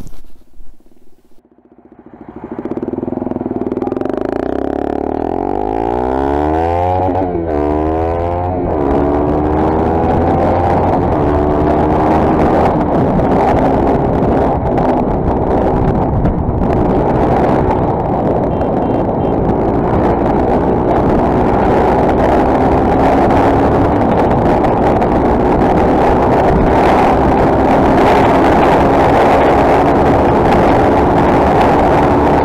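Motorcycle engine pulling away and accelerating through the gears, its pitch climbing and dropping back at quick shifts a few seconds in. It then settles into a steady high-speed run whose pitch creeps slowly upward, with wind noise heard from on board.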